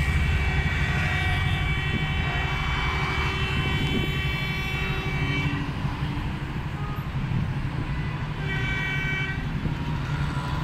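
Engines of slow-moving street traffic at a busy intersection, idling and pulling away. A vehicle horn is held for about the first half, and a shorter horn blast sounds near the end.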